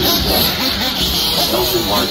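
Indistinct voices talking, with radio-controlled buggies running on the dirt track underneath as a steady high-pitched haze.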